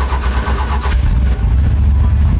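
Holley EFI-injected engine of a Mercury Comet hot rod just after firing up, running unevenly for about the first second, then settling into a steady fast idle of about 1,100 rpm while the EFI is still in its cold warm-up mode.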